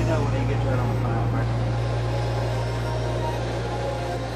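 A steady low hum, with indistinct voices over it for the first second or so.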